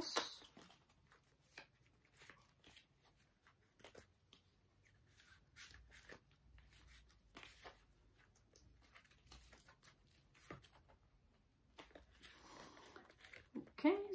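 A deck of tarot cards being shuffled by hand: quiet, scattered flicks and taps of the cards, with a longer rustling stretch near the end.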